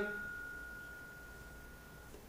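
A small tap dinner bell ringing out after a single strike: one clear steady tone that fades away.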